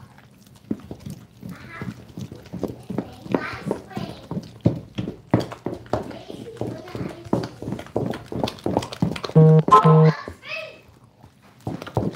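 Wooden spoon beating thick marinade batter in a stainless steel bowl: a quick, uneven run of knocks and wet slaps against the bowl, about three a second. Two short beeps near the end.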